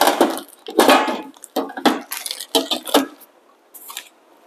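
Handling sounds as the espresso machine's stainless steel drip tray and its cover are put back in place: a handful of short clatters and scrapes of metal and loose parts being set down.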